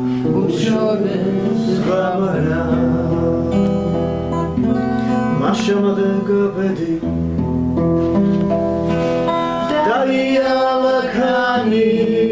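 A song sung in long held notes to a strummed acoustic guitar accompaniment.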